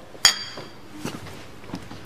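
Two glass beer bottles clinked together once in a toast: a single short, bright clink with a brief ringing tail.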